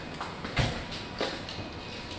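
Footsteps of several people walking on a hard floor: a few separate steps, the heaviest a low thump about half a second in.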